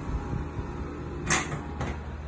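Two short, sharp clacks about half a second apart, over a steady low hum.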